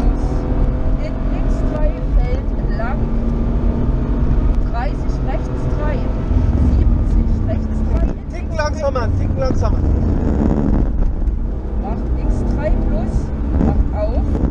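BMW rally car engine heard from inside the cabin, running hard and steadily at stage speed. The engine note drops briefly about eight seconds in.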